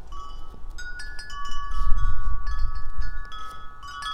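Wind chime ringing in gusty wind: several notes struck one after another, ringing on and overlapping. A gust rumbles on the microphone around the middle.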